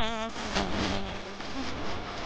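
Murmur of a crowd of people standing and talking, with a short wavering buzz at the very start.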